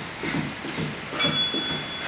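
A single bright bell ding about a second in that rings briefly and fades. It is an interval timer's bell marking the end of an exercise interval, heard over a steady rhythmic low pulse from the ongoing exercise.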